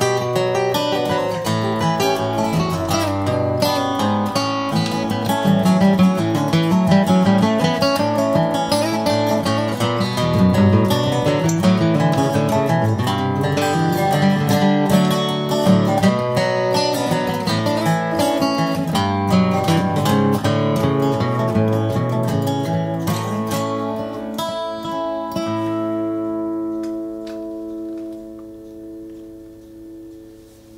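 Instrumental passage on a resonator guitar and an acoustic guitar, picked and strummed together. About 25 seconds in the playing stops on a final chord that rings out and fades away, the end of the song.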